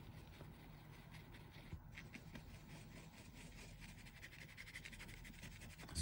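Near silence with faint scratchy rubbing of a small paintbrush working alcohol ink into linen fabric.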